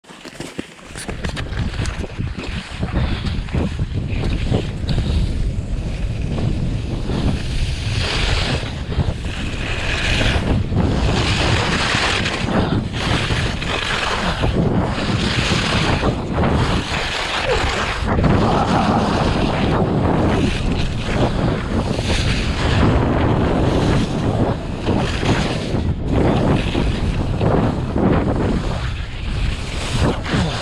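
Wind buffeting a skier's camera microphone at racing speed, with skis carving and scraping on packed snow through a series of turns. It starts quiet and builds within the first two seconds, with rhythmic surges about once a second through the middle of the run.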